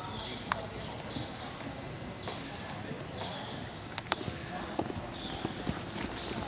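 Hoofbeats of several Arabian horses trotting on a dirt arena, with a few sharper clicks about four seconds in.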